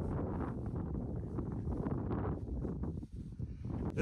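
Wind buffeting the microphone outdoors, a low uneven rush that rises and falls.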